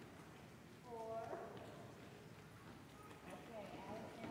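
Faint, indistinct voices: a short utterance about a second in and another near the end, over quiet room tone.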